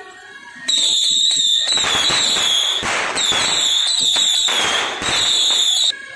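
A string of firecrackers going off in a loud, dense crackle. It starts suddenly about a second in and stops abruptly just before the end.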